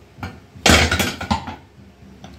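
A metal utensil clattering against a cooking pot: a few light knocks and one louder clash and scrape about two-thirds of a second in.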